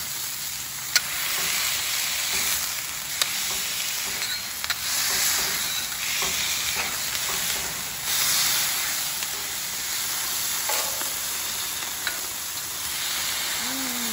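Smash-burger patties and sliced onions sizzling on a Blackstone flat-top griddle, the sizzle swelling as the beef is pressed flat under a pair of stacked steel spatulas. A few sharp metal clicks from the spatulas.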